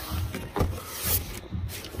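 Cardboard boxes being handled and shifted, cardboard rustling and scraping against cardboard, with a couple of sharper scrapes partway through.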